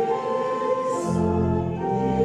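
Congregation singing with church organ accompaniment, held chords that change near the start and again near the end.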